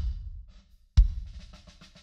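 Recorded acoustic drum kit playing a groove. Two hard kick-and-snare hits land about a second apart, each trailing off in a reverb tail from a Lexicon 224 digital reverb emulation on the kick drum, with a run of quick hi-hat ticks between them.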